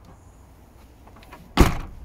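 The tailgate of a Volkswagen Golf Alltrack wagon being slammed shut: a single loud thud about one and a half seconds in, dying away quickly.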